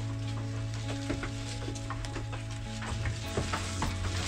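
Crackling rustle of an armful of cut leafy fodder being carried and handled, with scattered sharp crackles, over steady background music.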